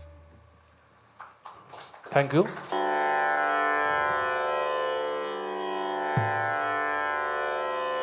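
The low ring of a tabla's bass drum (bayan) fades out, and about a third of the way in an electronic tanpura drone starts abruptly and holds steady, a sustained string drone rich in overtones.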